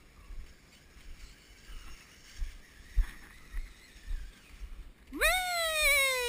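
Low, irregular rumble of wind on the camera microphone with a few soft knocks. A little after five seconds a high voice calls out a long drawn-out "oui", rising sharply and then slowly falling, as praise to the dog.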